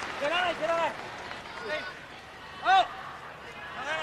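Men's voices shouting short, drawn-out calls across a hushed wrestling arena, with a few separate shouts and the loudest about three-quarters of the way through.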